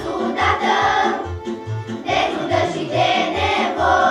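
Children's choir singing together in Romanian, over a steady low beat that pulses about twice a second.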